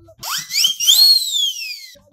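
Comedy sound effect: a whistle that slides quickly up in pitch and then glides slowly down, with a hissing whoosh under its first second.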